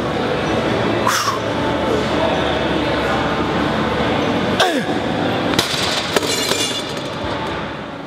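A man groaning with effort through his last reps on a cable machine: one strained groan about a second in and a longer one falling in pitch near five seconds in, over steady gym background noise.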